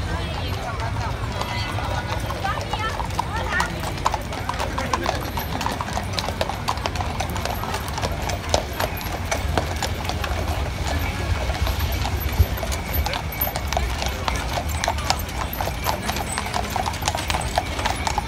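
Horseshoes clip-clopping on the paved street as draught horses pull decorated carts past, a quick irregular run of hoof strikes, over the chatter of a crowd.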